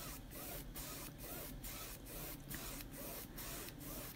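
Paintbrush swishing back and forth across a stretched canvas, blending the paint in faint, even strokes, about two a second.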